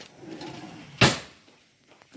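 A metal spoon knocking once, sharply, against a nonstick frying pan about a second in, as solid coconut oil is put into the pan.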